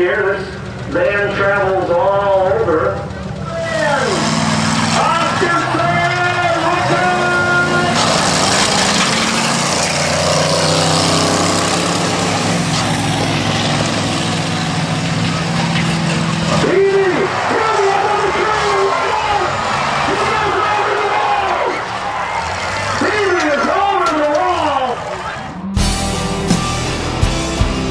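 Race-track sound of a van towing a trailer in a demolition-style trailer race: running engines and a raised voice, with a long, loud noisy stretch in the middle as the van and trailer crash and scrape along the asphalt.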